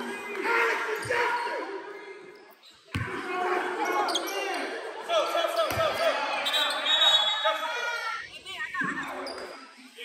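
A basketball bouncing on a hardwood gym floor: three single thumps a couple of seconds apart, under the chatter of players and spectators in the hall.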